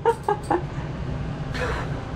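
Short bursts of laughter at the start, then a breathy exhale near the end, over the steady low hum of a Truma Saphir air conditioner running.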